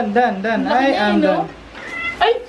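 A cat meowing in long, wavering cries while being held up, over a woman's voice; the cries stop about one and a half seconds in.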